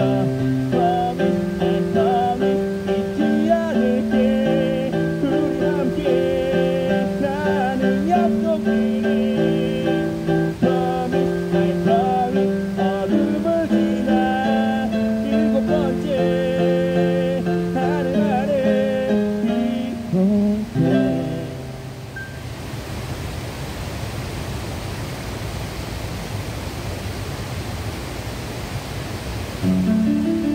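Live electric keyboard music with a plucked, guitar-like sound. About 22 seconds in the music stops, leaving a steady rushing noise of water spilling over a low river weir, and the music starts again at the very end.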